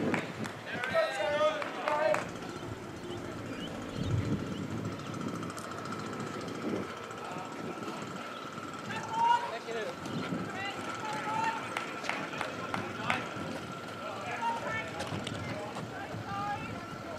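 Outdoor ambience with voices: a brief stretch of nearby talk about a second in, then scattered distant voices and a faint steady high tone.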